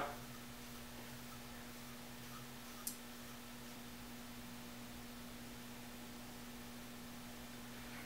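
Quiet room tone: a faint steady low hum under light hiss, with one small click about three seconds in.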